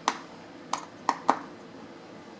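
Four light, sharp clicks of small hard parts being handled as the single T9 Torx screw holding the iMac's SD card reader is taken out, the first the loudest and the others within the next second and a half.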